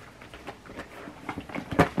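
Handling of a fabric tote bag full of perfume bottles: soft rustling and a few small knocks as it is picked up, the sharpest knock just before the end.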